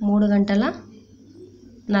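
A woman's speaking voice: one long, drawn-out syllable at the start, a pause of about a second, then talk resumes near the end.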